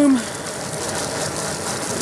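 Jetboil canister stove burner running with a steady hiss, its two cups of water heating and just about at the boil.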